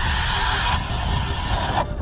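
Battery-powered electric ice auger drilling through lake ice: a steady motor whine over the hiss of the spiral blade cutting, cutting off near the end.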